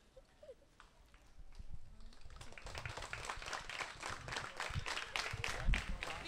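A small audience clapping, starting about a second and a half in and growing louder, with individual claps distinct, plus some low thumps near the end.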